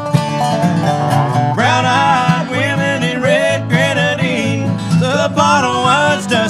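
Acoustic bluegrass playing: strummed acoustic guitar with Dobro resonator guitar. Voices start singing the chorus about a second and a half in.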